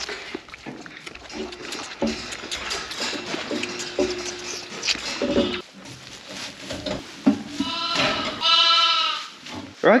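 Sheep bleating: several shorter, lower bleats in the middle, then two long high-pitched bleats, typical of lambs, near the end. Clicks and rustling run underneath.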